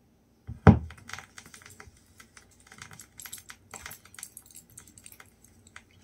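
Turntable stylus lowered onto a vinyl record and heard through the horn loudspeakers: one loud, deep thump about half a second in, then irregular clicks and crackles of the record's run-in groove before the music begins.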